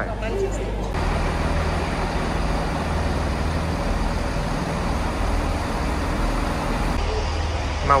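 Diesel train engine idling at a station platform: a steady low drone that sets in about a second in.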